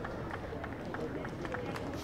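Scattered applause from a thin crowd of spectators after a boundary, a light patter of separate claps over open-air ground ambience.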